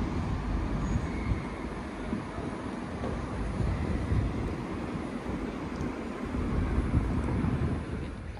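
Road traffic at a busy city junction, buses and cars running as a steady, loud rumble.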